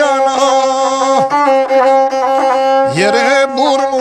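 Gusle, the single-string bowed Balkan folk fiddle, played with a horsehair bow: a steady, nasal, reedy tone with quick ornamented turns and a rising slide about three seconds in.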